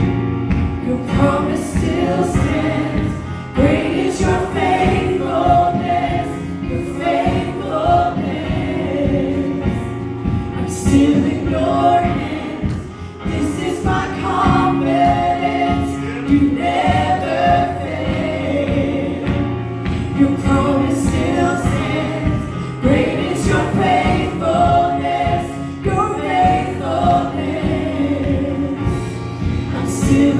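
Women's vocal group singing a gospel worship song in harmony into microphones, over instrumental backing with sustained bass notes and a steady beat.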